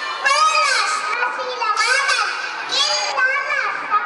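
A young child's high-pitched voice reciting loudly in short phrases, the pitch swooping up and down widely.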